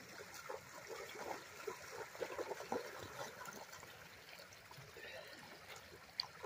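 Faint trickling of shallow river water with small, irregular splashes from dogs wading through it.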